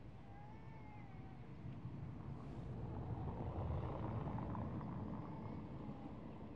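An aircraft passing overhead: a low rumble that swells to its loudest around the middle and then fades.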